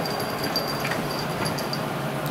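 A Yorkshire terrier burrowing and rooting in bedsheets: a steady rustling of fabric.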